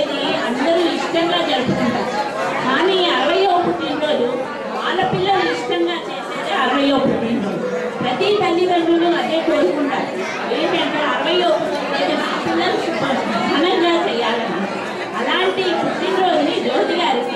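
A woman speaking into a handheld microphone, her voice carrying in a large hall, with background chatter underneath.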